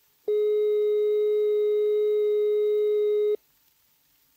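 British Post Office telephone 'number unobtainable' tone, played from a 1928 gramophone record: a steady high-pitched note without interruptions. It sounds for about three seconds and cuts off abruptly. It signals that the number dialled cannot be reached.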